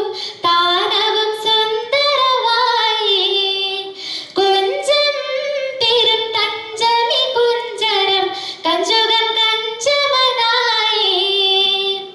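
A schoolgirl singing a Mappilappattu, a Malayalam Mappila song, solo into a microphone. A single voice moves through ornamented, wavering melodic phrases with short breath pauses between them, and no instrument is heard.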